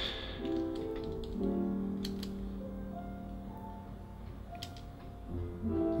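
Piano playing in the background: slow, held notes that change every second or so. A few light clicks and taps from hands handling the camera on the gimbal cut in over it.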